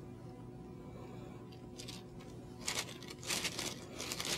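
Faint steady room hum, then in the second half a few short, soft rustles of cloth as the examiner's hands and lab coat move against the patient's back.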